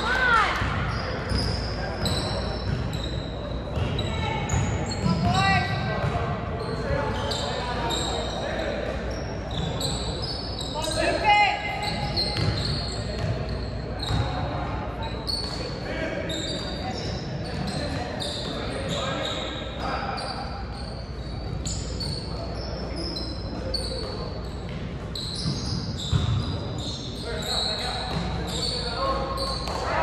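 Sounds of a basketball game in a large gym: the ball bouncing on the hardwood court, short high sneaker squeaks, and indistinct voices of players and spectators calling out, all echoing in the hall.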